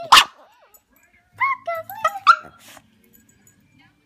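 A dog barks once, loud and sharp, then gives several short, high-pitched yelps and whines.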